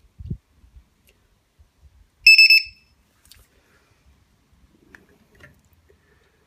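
LiPo battery voltage checker's buzzer giving a half-second burst of high-pitched beeping about two seconds in, its start-up beep on being plugged into the 3S battery's balance lead. Faint clicks of the connectors being handled come before and after it.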